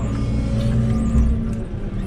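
Diesel engine of a JCB loader running steadily, heard from inside its cab.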